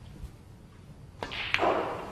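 Snooker shot: the cue tip strikes the cue ball a little over a second in, and the cue ball clicks against a red about a third of a second later. A short rush of noise follows and fades.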